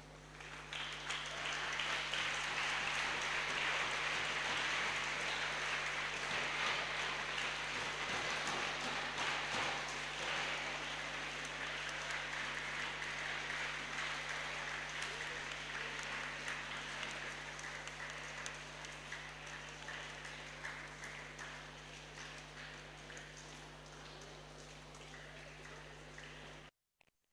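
Audience applause that breaks out about a second in, is loudest for the next several seconds and then slowly dies away.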